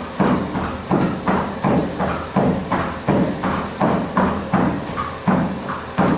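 A horse's hooves striking a moving treadmill belt at the trot: an even rhythm of thuds, about three a second, over the steady hiss and thin whine of the running treadmill.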